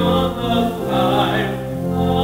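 A hymn sung by a choir with steady held notes in the accompaniment underneath.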